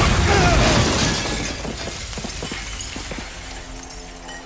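A large glass window shattering as a body crashes through it, then a scatter of small glass clinks as pieces fall, dying away over the next couple of seconds.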